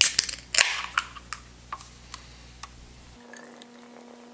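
An aluminium beer can being cracked open: a click of the pull tab, then a short, sharp hiss of carbonation escaping about half a second in. A few lighter clicks and knocks of the can being handled follow.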